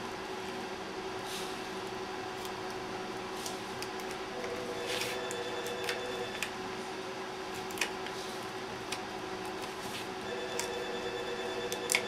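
X-Acto craft knife trimming excess plastic shrink film from the top rim of an aluminium can, heard as faint, scattered scratches and clicks. A steady hum runs underneath.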